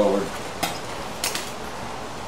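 A few light clicks and clinks as a Telecaster electric guitar and its cable are handled at the output jack, over a faint steady hiss.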